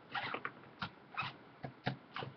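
Irregular clicks and taps from working a computer while setting it up, about half a dozen short strokes over two seconds.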